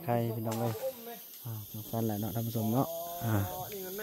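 Speech only: a voice talking in short phrases with brief pauses.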